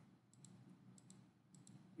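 Near silence with a few faint, separate clicks from a computer mouse.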